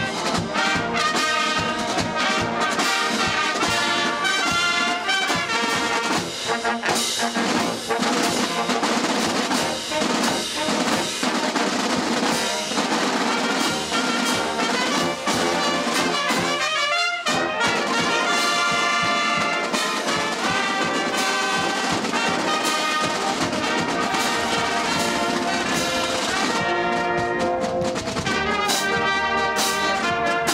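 Show and drum band (fanfare) playing: brass and saxophones with sousaphones over marching snare drums. There is a brief break about seventeen seconds in.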